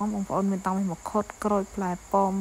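A person talking in a steady flow of short phrases, with a faint, steady, high-pitched tone running underneath.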